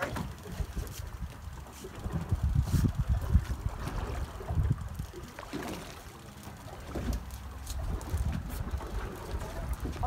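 Gusty low rumble of wind buffeting the microphone aboard a boat at sea, over a steady low hum.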